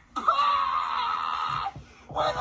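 A high-pitched voice screaming: one held, wavering scream lasting about a second and a half, which stops shortly before the end.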